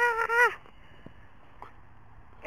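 A short, high-pitched cry at the start that wavers in three quick pulses, then quiet with a few faint soft clicks.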